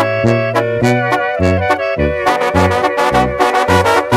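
Sinaloan banda music in an instrumental passage: trumpets and trombones play over a tuba bass line that steps from note to note, with regular drum strokes keeping the beat.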